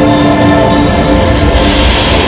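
Loud soundtrack of a projection-mapping show through a sound system: held droning tones over a deep rumble, joined about one and a half seconds in by a rush of hissing noise.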